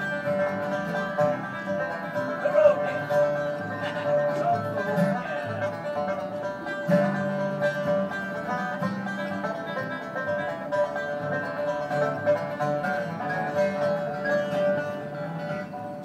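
Acoustic bluegrass band playing an instrumental break: strummed acoustic guitars and plucked upright bass under a steady lead line, with no singing.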